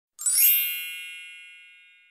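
A bright, shimmering chime sound effect that strikes about a quarter of a second in and rings out, fading away over about two seconds.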